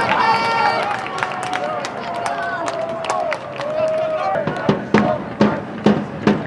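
Football stadium atmosphere: shouting voices and sharp knocks, with a supporters' drum settling into a steady beat of about three strokes a second in the second half.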